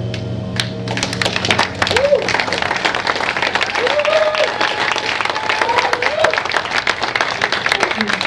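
The band's final chord on electric guitar and bass rings out and fades, then the audience claps, individual claps distinct, with a few shouted whoops.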